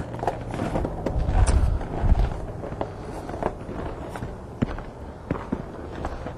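Footsteps of a person walking, heard as irregular light steps and knocks, with a low rumble about one to two seconds in.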